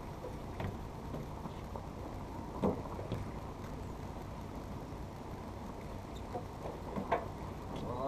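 Canal narrowboat's engine idling steadily, with a few short knocks and clatters as the mooring rope is handled at the bow; the loudest knock comes about two and a half seconds in.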